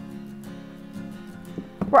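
Soft background acoustic guitar music with held, sustained notes.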